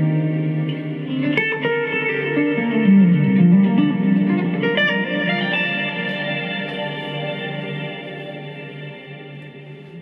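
Electric guitar played through a Fractal Audio FM3 modeller with reverb and delay effects: picked notes and chords, with one note bending down and back up about three seconds in. The notes then ring out and fade gradually over the last few seconds.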